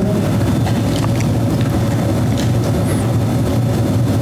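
Steady low rumble of room noise with a faint, even hum above it and no distinct events.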